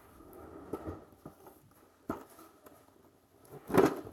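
Quiet handling noises with a few light clicks as toys are set down and picked up, then near the end a short, loud crinkle as a plastic-windowed toy box is brought up close to the microphone.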